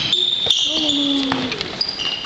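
A basketball bouncing on a sports-hall floor during a game, with one sharp bounce about half a second in. High squeaks, likely from shoes, and players' voices sound over it.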